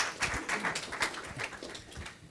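Scattered clapping from a few audience members, dense at first and thinning out toward the end, with a little faint murmuring.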